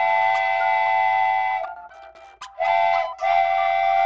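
Steam-train whistle sound effect, a steady chord of several notes. It gives a long blast of under two seconds, a short toot about a second later, then a second long blast in the last second.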